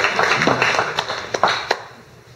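Audience applauding, a dense patter of hand claps that thins to a few single claps and dies away near the end.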